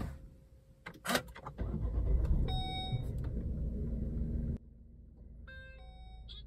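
Volvo V40 T4 engine started by push button, heard from inside the cabin. A click, then the starter engages about a second in and the engine catches and runs with a loud low rumble. Near the end the sound drops suddenly to a quieter steady idle, and short electronic chime tones sound over it.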